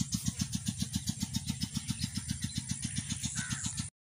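Petter-type single-cylinder diesel engine of a tube-well water pump running steadily, with an even beat of about ten strokes a second. The sound cuts off abruptly just before the end.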